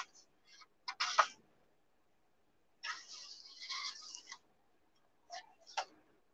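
Soft paper rustling as the pages of an old hardback book are turned: a few short brushes in the first second and a half, a longer rustle from about three to four and a half seconds in, then two light ticks near the end.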